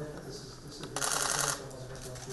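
Camera shutter firing in a rapid continuous burst for about half a second, starting about a second in, over low background voices.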